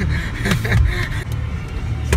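Low rumble of an all-wheel-drive car heard from inside the cabin while driving on an unpaved sand road, with a few brief knocks from the rough surface.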